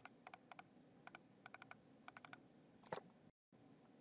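Faint, quick computer mouse clicks, many of them and often in close pairs, with one louder click about three seconds in.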